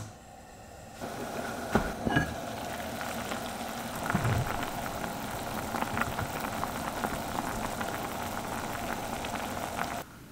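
Apple and red date tea boiling in a clay pot: a steady bubbling, with two hard clinks about two seconds in, likely the pot's ceramic lid being handled.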